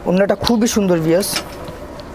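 A man speaking a word or two in Bengali, followed by a brief rustle of cloth as garments are handled on the counter.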